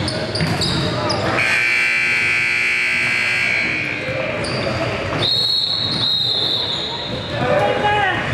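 Gym scoreboard buzzer sounding for about two seconds, starting just over a second in, then a referee's whistle blown for about a second around five seconds in, over a basketball bouncing and voices echoing in a large gymnasium.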